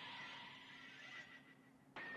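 Near silence: faint audio from the anime episode being watched, a soft hiss with a thin steady high tone that dies away near the end.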